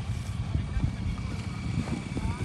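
Wind buffeting the microphone over the low, uneven rumble of a moving vehicle's engine.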